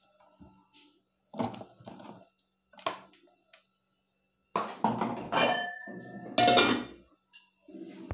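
Aluminium cooking pot and lid being handled: a few scattered knocks and clinks, then a louder run of clattering in the second half with a brief metallic ring.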